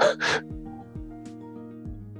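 Two short breathy exhalations at the very start, the tail end of a man's laughter, followed by soft background music with long held notes.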